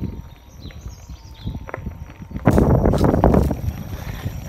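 A husky's paws trotting on a gravel track, heard as irregular footfalls over a low rumble. About two and a half seconds in, a louder stretch of crunching, rushing noise lasts about a second as the dog comes close.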